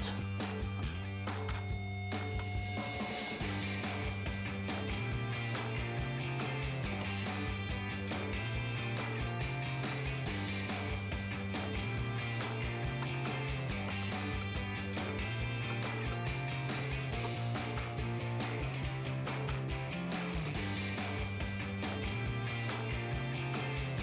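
Background music with a steady bass line that steps to a new note every second or two.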